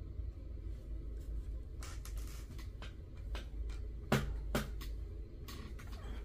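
Trading cards being handled and set down on a playmat: a few faint rustles and light taps, the sharpest about four seconds in, over a low steady hum.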